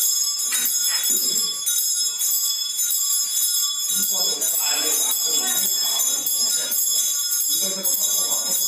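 Small metal ritual bells jingling continuously in a steady high shimmer, with voices talking faintly underneath.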